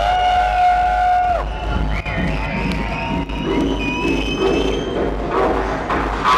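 Techno DJ set over a club sound system, in a beatless passage: long held synth tones that bend in pitch at their starts and ends, over a steady low bass.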